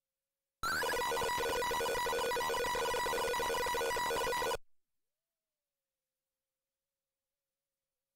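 A simulated piezo buzzer in a browser-based Arduino circuit simulator plays an 'alarm effect' program. It gives a buzzy electronic tone of about four seconds that starts with a short rising chirp and then holds a steady level before cutting off suddenly. It sounds a little bit weird because of the simulator rather than like a real buzzer's alarm.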